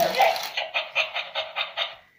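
Chi Chi Love robotic plush chihuahua toy responding to a 'come here' voice command through its small speaker: a short whine, then a fast, even run of pulses, about six or seven a second, that cuts off just before the end.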